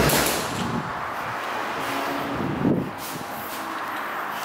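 A sudden loud bang, then about a second of rustling noise and a shorter, softer knock a little under three seconds in.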